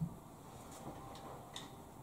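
Faint clicks and taps of altar vessels being handled on the altar: a soft knock at the start, then a few small, light clinks about half a second apart.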